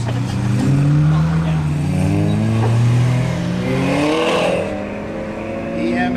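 Mk4 Volkswagen Golf GTI's engine revving hard as the car launches from the autocross start and accelerates through the cone course, its pitch rising and dropping with throttle and gear changes. About four seconds in there is a brief hiss.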